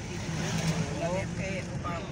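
Steady vehicle engine hum and road noise heard from inside a moving vehicle, with people talking over it.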